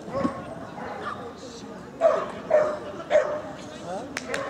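A dog barking during an agility run: four short, sharp barks, one just after the start and three close together in the second half.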